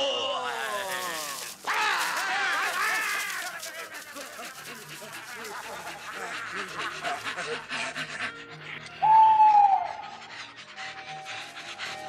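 Wordless hooting and wailing cries from costumed forest creatures, sliding down in pitch, over fairy-tale film music. Then a softer stretch of rustling, and about nine seconds in a single loud whistle-like note that drops at its end, before sustained music notes.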